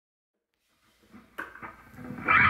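Silence for about a second, then a few faint clicks and light string taps from an electric guitar through its amplifier, getting a little louder near the end.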